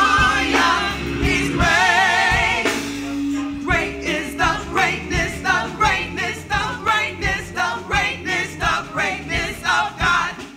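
Gospel vocal group singing live, several voices together with vibrato. About three and a half seconds in, a steady beat of about two strokes a second comes in under the voices.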